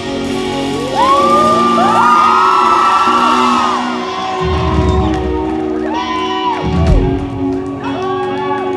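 A concert crowd whoops and cheers over an electric guitar chord left ringing through the amps, as a rock song ends. There are a few low thuds partway through.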